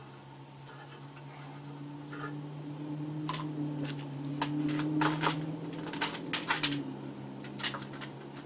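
Metal parts clinking and scraping in a shallow metal overflow dish as they are handled, with a string of sharp clinks starting about three seconds in, over a steady low hum.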